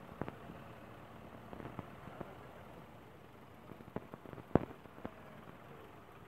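Raindrops tapping on the phone's microphone: scattered sharp ticks over a low steady hiss, the loudest about four and a half seconds in.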